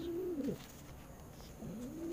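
Domestic pigeons cooing: one low coo dies away about half a second in, and another begins near the end, each rising and then falling in pitch.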